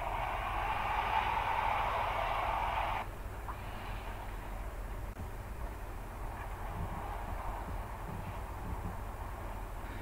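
A geyser erupting: a steady rushing hiss of water and steam jetting from the vent. It cuts off suddenly about three seconds in, leaving a quieter steady background noise with a low rumble.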